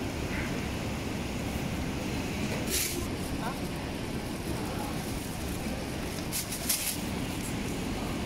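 Thin plastic bag crinkling in two short bursts, a little under three seconds in and again near the end, as live mantis shrimp are tipped into it from a plastic basket, over a steady low background rumble.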